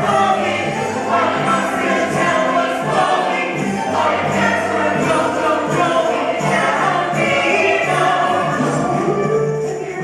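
Musical-theatre ensemble singing in chorus over a live band, with a steady percussion beat.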